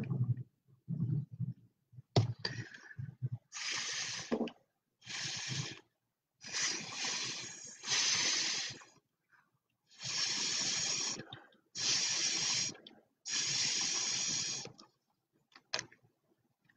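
A person blowing hard through a drinking straw to push wet acrylic paint across a canvas: a series of about seven airy hissing puffs, each about a second long with short pauses between, after a few soft low sounds in the first three seconds.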